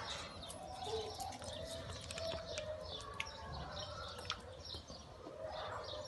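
Birds chirping over and over in short high notes, with several short, steady, lower calls among them.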